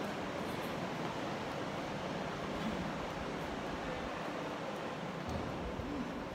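Steady, even background noise with no distinct sound standing out.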